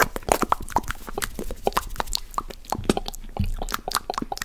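Close-miked wet mouth sounds: irregular sharp clicks and smacks, several a second.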